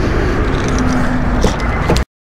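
Road traffic noise from cars passing on a busy multi-lane road, a steady low rumble with a faint engine hum through the middle.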